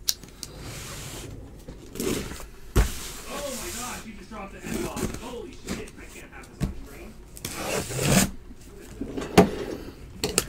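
Cardboard boxes being handled on a table: scraping and rustling with a few sharp knocks, the sharpest about three seconds in, under faint speech.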